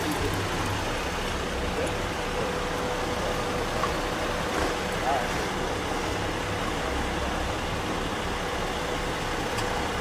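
Steady low rumble of vehicles idling, with faint indistinct voices and a thin steady tone through the middle.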